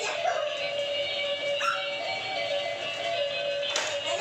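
Electronic toy music playing from battery-powered light-up toy cars, a tinny tune built on a steady held note.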